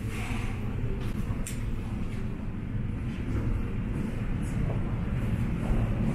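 Steady low rumble with a few faint clicks: the background noise of walking down a carpeted airport boarding jetway while pulling wheeled suitcases.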